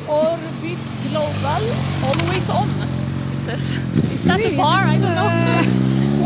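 Road traffic: a motor vehicle engine runs steadily, then climbs in pitch near the end as it accelerates, with voices talking over it.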